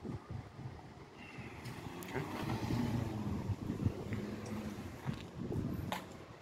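Street traffic: a vehicle passing, its sound swelling to its loudest about three to four seconds in and then fading.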